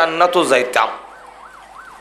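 A man's sing-song preaching voice for just under a second. Then, behind it, a faint siren whose tone rises and falls about three times a second.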